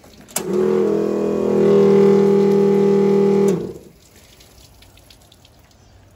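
Everflow 7-gallon-per-minute 12-volt pump switched on with a click, running with a steady hum for about three seconds, then switched off with a click.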